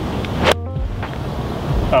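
A golf iron striking a ball off the turf with one sharp crack about half a second in, over steady wind noise on the microphone.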